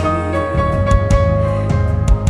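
Live band playing a slow instrumental passage: held piano chords over bass, with scattered drum hits.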